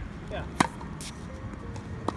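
Tennis ball impacts during a hard-court rally: one sharp pop about half a second in and a fainter, higher click about a second in. A brief voice sound comes just before the pop.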